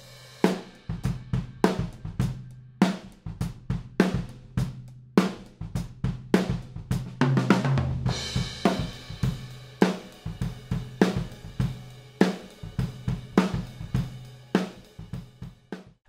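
Acoustic drum kit playing a steady beat of kick, snare, hi-hat and cymbals, heard only through a pair of AEA N8 figure-eight ribbon microphones in ORTF as overheads. About halfway through, a quick fill leads into a crash cymbal. The snare has a soft attack, which the drummer puts down to one mic riding high and no longer aimed at the snare.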